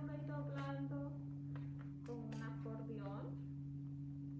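A woman's voice in two short stretches, each about a second long, over a steady low hum. A few faint ticks fall between the two stretches while paper is being folded.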